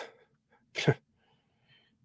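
A man's breath sounds: a short breath at the start, then about a second in a single brief, breathy voiced burst with a falling pitch, like a clipped exhale or grunt.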